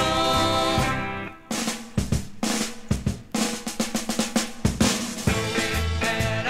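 Recorded Irish folk-rock band playing, then dropping out about a second in for a drum break of uneven snare and kit strokes over a held low note. The full band comes back in near the end.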